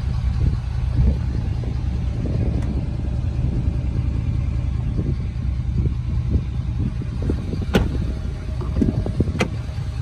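Ford 6.7L Power Stroke V8 turbo-diesel idling with a steady low rumble. Two sharp clicks come near the end.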